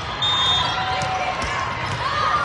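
Indoor volleyball rally in a large hall: shoes squeaking on the sport court and two ball hits about a second in, over the voices of players and spectators.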